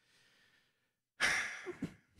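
A person sighing: one breathy exhale into a close microphone about a second in, trailing off with a faint bit of voice.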